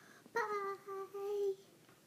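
A young girl singing a few held notes at a steady pitch. It starts about a third of a second in and lasts just over a second.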